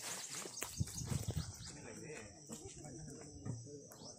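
Outdoor field sound: a steady high chirring of insects, with faint men's voices talking in the second half and scattered knocks and low bumps from the plastic pots being handled and emptied.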